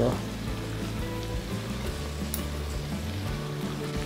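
Sliced vegetables and tomato slices sizzling steadily in an oiled frying pan, under soft background music.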